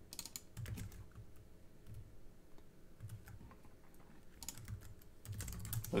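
Typing on a computer keyboard: a short run of keystrokes in the first second, a few scattered presses, then a quicker run of keys over the last second and a half.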